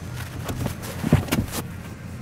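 Second-row seat of a 2018 Toyota Rush being released by its one-touch tumble and flipping forward: a few short mechanical clicks and knocks, the loudest about a second in.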